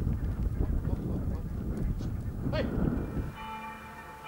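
Low outdoor rumble with a short man's shout of "hey" about two and a half seconds in; shortly before the end a steady chord of several held tones sets in, quieter than the rumble.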